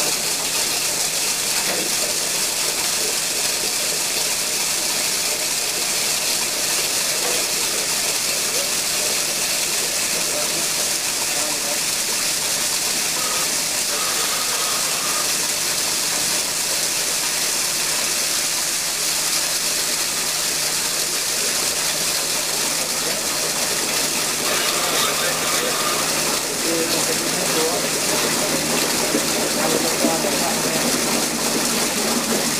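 Drilling fluid gushing and spraying out of a horizontal directional drilling bore around a PVC pipe being pulled back through it: a steady rushing noise, with a machine running underneath.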